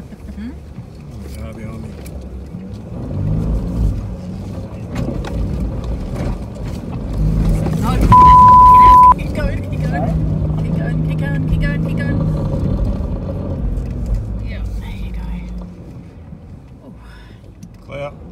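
A four-wheel drive's engine working hard in soft sand as it climbs a dune, heard from inside the cabin, the revs rising and falling and easing off near the end; the climb is done in high range where low range could have been used. About eight seconds in, a loud one-second bleep tone.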